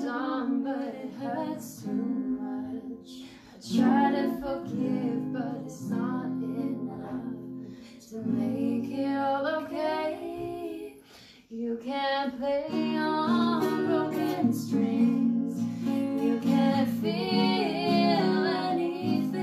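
Two women singing a song to an acoustic guitar, the vocal phrases broken by short pauses while the guitar carries on.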